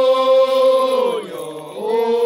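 A voice chanting one long held note that slides down in pitch a little over a second in, then takes up a new note near the end.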